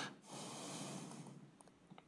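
A single breath close to the microphone, lasting about a second and fading out.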